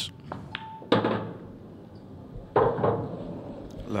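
Pool balls being played on an English pool table: a sharp knock of cue and balls about a second in and another hard knock of balls about two and a half seconds in, with a short electronic beep just before the first.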